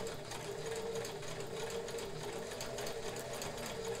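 Kenmore 158.1941 all-metal sewing machine running slowly at a steady hum, sewing a rickrack stretch stitch in which the feed moves the fabric forward and then pulls it back.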